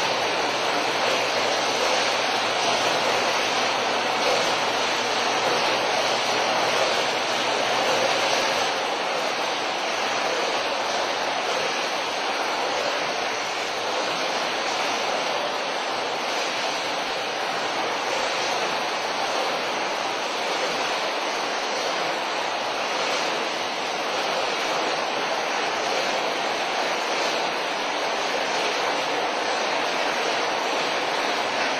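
Steady, even industrial background noise in a packaging plant, with a faint low hum that stops about nine seconds in.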